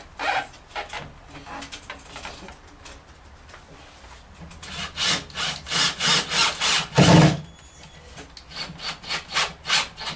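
Cordless drill driving screws into a wooden ceiling board to fix mirror clips, a run of short rasping strokes with the loudest grind about seven seconds in, and a second, weaker run near the end.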